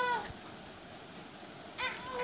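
A three-month-old baby's short, high-pitched vocal sound, falling in pitch as it ends just after the start, then another begins near the end.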